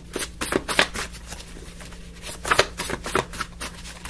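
A deck of tarot reading cards being shuffled by hand: quick flurries of flicking card clicks, busiest about half a second in and again around three seconds.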